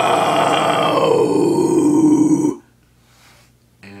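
A man's low scream, the deep growled vocal of deathcore and metalcore, held once for about two and a half seconds and then cut off. It slides from an open 'ah' into a darker, rounded 'oh' as the mouth closes toward an O shape.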